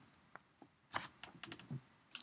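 A few faint, irregular clicks of computer keys, a single one about a third of a second in and a stronger one near the middle, then several in quick succession in the second half.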